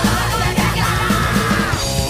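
Hardcore punk song with a shouted vocal held for nearly two seconds over a fast, even drumbeat and band.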